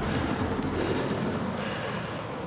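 Steady rushing noise of a bicycle rolling along a concrete path: wind on the action camera's microphone mixed with tyre noise.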